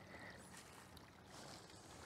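Near silence: only a faint, steady outdoor background hiss.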